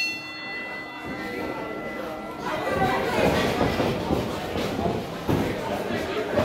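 A wrestling ring bell rings to start the match, its tone dying away over about two and a half seconds. From about halfway through, a small crowd's voices and shouts fill the hall.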